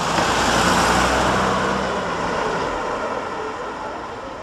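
A motor vehicle driving past, its engine and road noise swelling over the first second and fading away toward the end.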